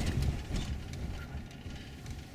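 Low rumble of a car's engine and tyres heard from inside the cabin as it drives slowly, easing off a little after the first second, with a few faint knocks near the start.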